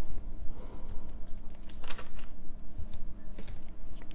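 Light, irregular clicks and rustles of paper craft pieces being handled, as a small paper embellishment is mounted onto a paper nail file box with a foam adhesive dot.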